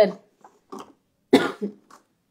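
A woman coughs: one sharp cough about a second and a half in, followed at once by a smaller one.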